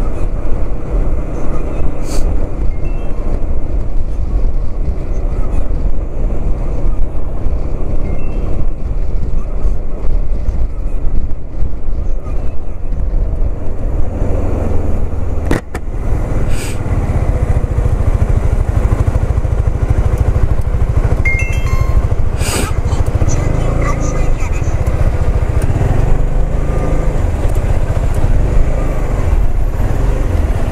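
Wind and road noise from a moving Suzuki Skywave 400 big scooter, a steady low rumble with its engine under the wind. There is a brief dropout about halfway through, after which the low rumble is heavier.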